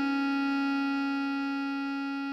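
Bass clarinet holding one long, steady note, written D#5 (sounding C#4), with no change in pitch or loudness.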